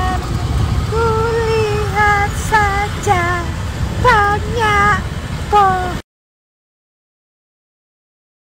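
A high voice singing a short, sliding melody over the low rumble of an open jeep on the move. Both cut off abruptly about six seconds in, leaving silence.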